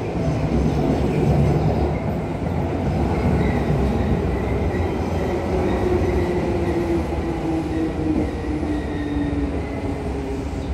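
Seibu 101 series electric train rolling slowly past at close range, wheels rumbling on the rails. A steady whine joins in during the second half.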